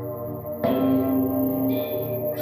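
Experimental improvised music for electric guitar and laptop ensemble: sustained, layered pitched tones. A new, louder chord is struck sharply about half a second in and rings on.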